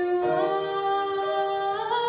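A woman singing long held notes over piano, live, her pitch sliding up near the end.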